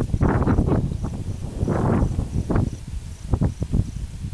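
Irregular noisy rustling bursts on the microphone, over a faint, evenly repeating high chirp from an insect in the grass.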